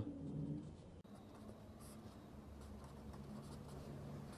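Pen writing on paper: faint, irregular scratching strokes as an equation is written out by hand.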